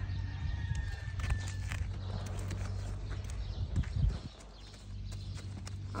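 A mare's hooves stepping and shifting on dry dirt and straw: scattered soft knocks, the loudest just before four seconds in, over a steady low hum.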